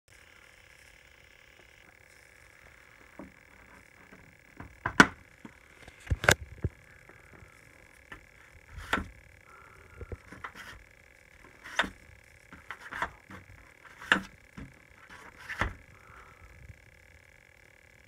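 Slider of a magnetic dishwasher clean/dirty sign being snapped back and forth, a sharp click every one to three seconds, about eight in all, over a faint steady hum.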